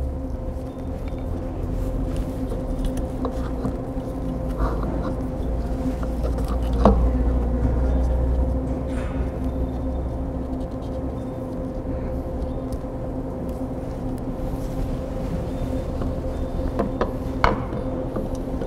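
Steady low machine hum, with a few short, light clicks and handling noise as the motor's cable connectors are pulled apart by hand: one sharp click about seven seconds in and a couple more near the end.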